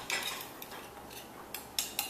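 A plastic spoon stirring ground coffee, sugar and cold water in an electric Turkish coffee pot, with a few light knocks and scrapes against the pot, near the start and near the end, to dissolve the sugar and coffee before brewing.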